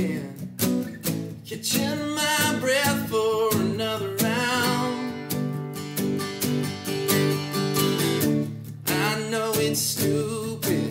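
Three acoustic guitars strummed and picked together while a man sings the verse of a country-pop song.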